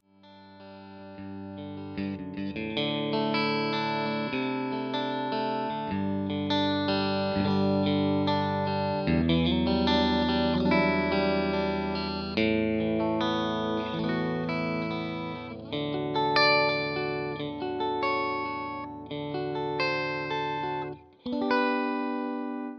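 Fender Elite Stratocaster electric guitar, played through an amplifier with its low-noise single-coil-style pickups: a melodic passage of sustained notes over held chords. It swells in over the first two seconds and breaks off briefly about a second before the end, followed by one more chord.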